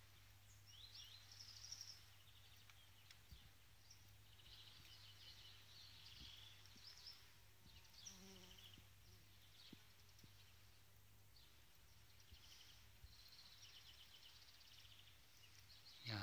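Near silence: faint outdoor ambience with scattered faint high chirps and short trills, over a steady low hum.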